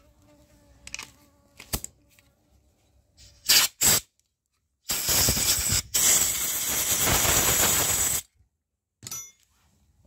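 Compressed air from a blow gun hissing through the port of a small motorcycle cylinder head: two short blasts, then a steady blast of about three seconds with a brief break.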